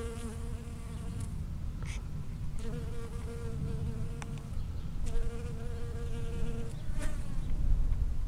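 Honeybee's wing buzz in flight close to the microphone, in three bouts: one ending about a second in, one from about two and a half to four and a half seconds, and one from about five to nearly seven seconds, over a steady low rumble.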